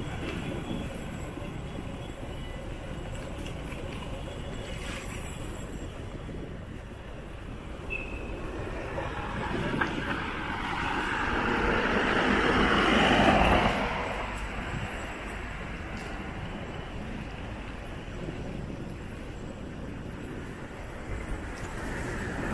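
Steady low street and road rumble, with a small light truck's engine and tyres growing louder as it approaches, passing close about two-thirds of the way through, then quickly falling away.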